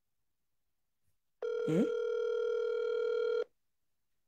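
A single steady telephone line tone, about two seconds long, starting and stopping abruptly, with a brief spoken 'Eh?' over its start.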